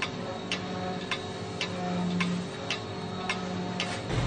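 Pendulum clock ticking steadily, just under two ticks a second, over a faint steady hum.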